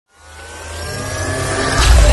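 Intro logo sound effect: a swelling riser that climbs out of silence, with rising tones over a low drone, and grows louder until a whooshing hit near the end.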